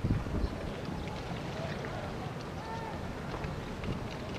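Steady wind rumble on the microphone, with a few faint distant shouts from people in the street.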